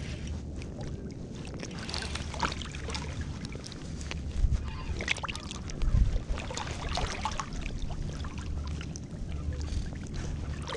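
Low rumble and handling noise on a hand-held microphone during a fight with a hooked fish, with scattered clicks and knocks and two heavier thumps about four and a half and six seconds in.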